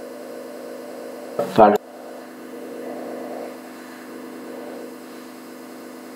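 Steady electrical hum on the recording, with a short burst of the narrator's voice about one and a half seconds in.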